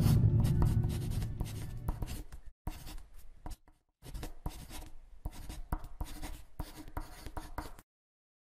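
Marker pen scratching out handwriting in many short, quick strokes, pausing briefly about halfway through. At the start it sits over the fading low tail of a music sting, and it cuts off to silence just before the end.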